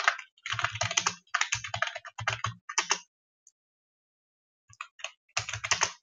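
Typing on a computer keyboard: quick runs of keystrokes for the first few seconds, a pause of well over a second, then another fast run near the end.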